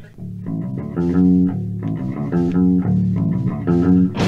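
Recorded post-hardcore band music: bass guitar and guitar playing a repeating riff of plucked notes, louder from about a second in.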